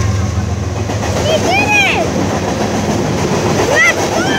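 Freight train's cars rolling past close by: a loud steady rumble of wheels on the rails. Two short high-pitched calls sound over it, about a second and a half in and near the end.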